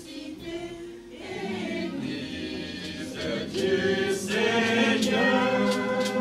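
A small choir of women's voices, supported by a few men's voices, singing a hymn together in held notes. The singing grows louder about three and a half seconds in.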